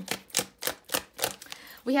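A deck of cards being shuffled by hand: a quick run of card snaps and clicks, about six a second, that trails off near the end.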